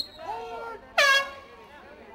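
A short, loud blast of a handheld air horn about a second in, with spectators' voices around it.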